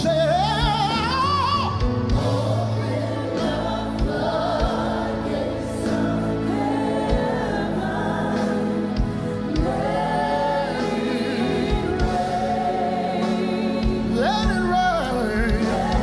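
Live gospel worship music: a male lead singer sings phrases with a wide vibrato near the start and again near the end, with long held notes between, over a band with bass and drums.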